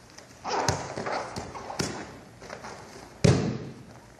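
Aikido throw and breakfall on padded mats. There is a second or so of rustling gi and footfalls with a couple of sharp knocks, then a heavy thud just after three seconds in as the thrown partner's body lands on the mat.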